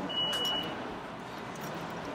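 Steady outdoor background hum with a single short, high-pitched steady beep lasting about half a second near the start.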